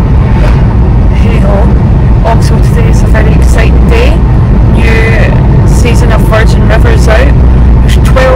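Steady low rumble of road and engine noise inside a moving car's cabin, with a voice talking over it.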